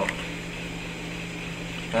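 A steady low hum with a faint hiss over it, with no change through the pause.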